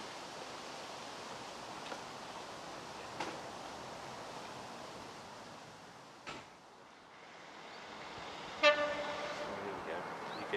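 Steady faint outdoor noise while a diesel train draws away, sagging after about six seconds. Near the end a GBRf Class 66 diesel locomotive sounds its horn as it approaches: one loud, steady note lasting about a second and a half.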